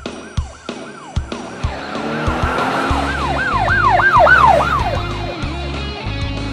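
Police siren sound effect, wailing in quick rising-and-falling cycles, about three a second, loudest in the middle. Regular knocks and a low rumble run under it, with music.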